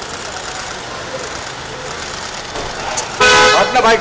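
Steady street background noise, then a vehicle horn honks once, loud and level in pitch, for under a second about three seconds in.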